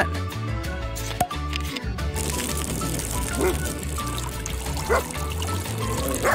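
Background music with a steady beat, and from about two seconds in, a steady hiss of water spraying from a faucet-fed pet shower brush hose.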